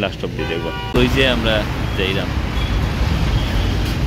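Steady road traffic noise from passing cars and motorcycles on a busy city street, with a man talking over it; the sound gets suddenly louder about a second in.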